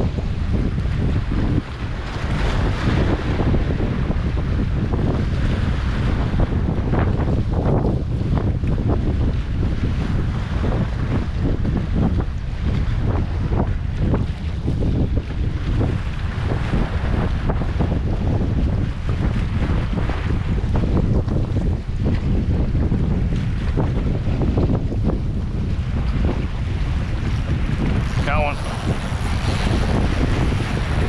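Wind buffeting the microphone in a steady, gusty rumble, over choppy water washing against shore rocks.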